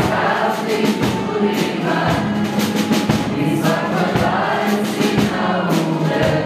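Music: a choir singing a song over instrumental accompaniment with a steady beat.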